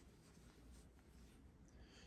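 Near silence, with only faint rustling of yarn being drawn through loops on a metal crochet hook.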